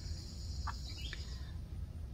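Outdoor summer background: a steady high insect drone that stops about three quarters of the way through. A couple of short bird chirps come near the middle, over a low rumble.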